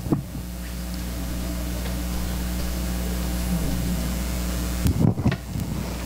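Steady electrical hum picked up by the room's microphone system while a handheld microphone is being handed over. Near the end the hum stops and a few handling knocks and bumps follow.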